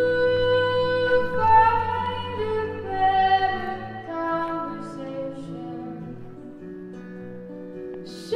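A song performed live: a woman singing over guitar accompaniment. The music grows quieter about halfway through.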